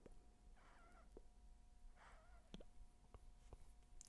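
Near silence while a tobacco pipe is smoked: a few faint clicks from the lips on the pipe stem, and two faint, brief wavering tones, about half a second in and about two seconds in.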